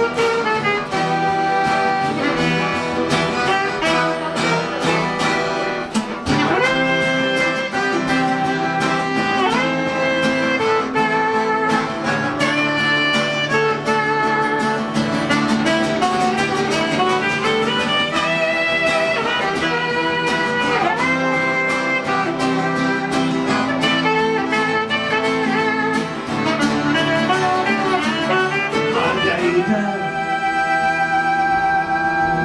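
Instrumental break of a live acoustic band: two acoustic guitars strumming a steady rhythm, with a lead melody of long held and sliding notes played over them.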